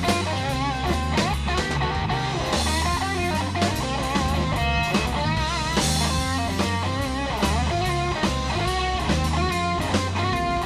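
Live blues-rock band playing an instrumental passage: an electric guitar plays a lead line with bent and vibrato notes over bass guitar and drum kit.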